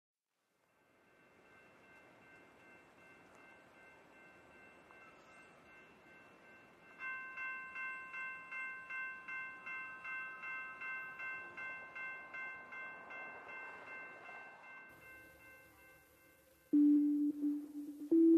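Ambient electronic music from a Toraiz SP-16 sampler: faint noise and held high tones, joined about seven seconds in by a pulsing chime-like sequence at roughly two to three notes a second that slowly fades. Near the end a hiss comes in, then a loud low sustained note starts abruptly.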